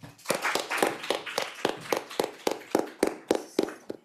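Applause in a lecture hall: many quick hand claps, with separate claps standing out, which stop near the end.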